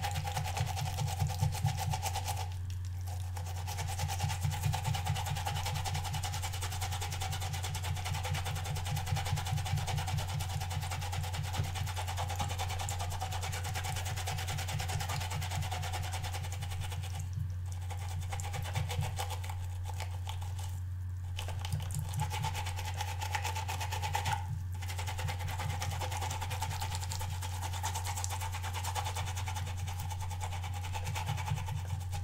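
Watercolour brush bristles scrubbed rapidly back and forth against a ridged silicone cleaning pad under running tap water, over a steady low hum. The scrubbing stops briefly a few times.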